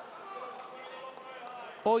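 Faint hall ambience of spectators murmuring during a pause in commentary, ending with a man's voice starting to speak.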